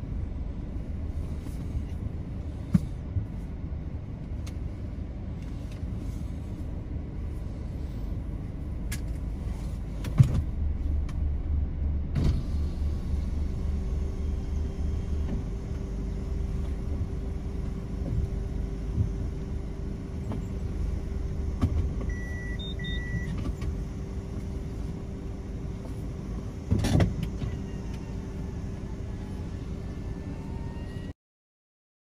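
Car engine and low cabin rumble heard from inside the car as it creeps into a parking space and stops, with a few sharp clicks. Two short high beeps come about two-thirds of the way through, and there is a louder knock near the end.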